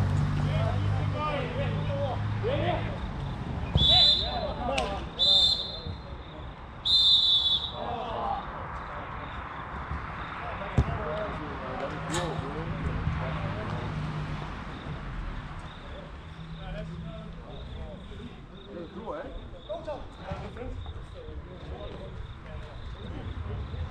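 A whistle blown three times, the full-time signal ending the match, the third blast the longest. Players' voices call out faintly around it.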